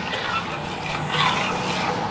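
Metal spoon stirring warm cream in a stainless steel pot, over a steady background hiss.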